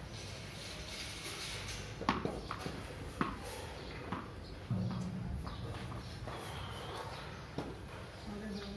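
Backyard cricket on a tiled courtyard: a run-up of footsteps, then a few sharp knocks of the ball bouncing on the tiles and meeting the bat, about two to three seconds in, with another knock near the end. A low hum comes in suddenly about halfway through.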